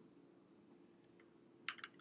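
Near silence, then a quick run of a few computer keystrokes near the end as a short word is typed.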